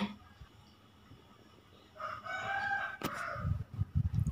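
A rooster crowing once in the background, a single drawn-out call of a little over a second that starts about halfway through. A sharp click and a few low knocks follow near the end.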